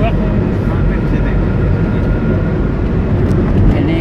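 Steady low rumble of road and engine noise inside a car's cabin while cruising at highway speed.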